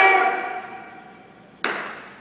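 A loud shout (kiai) from martial-arts students performing a form. It echoes through a large gymnasium and dies away over about a second. Near the end a single sharp crack rings out and echoes.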